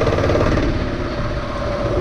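Motorcycle engine running steadily while riding a dirt track, under a wash of wind and road noise.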